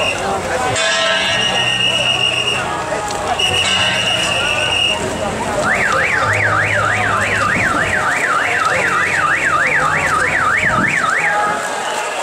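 Electronic siren sounding over crowd noise. First a high steady tone comes in beeps of about a second and a half. From about six seconds in it switches to a fast up-and-down warble, about three sweeps a second, for some five seconds.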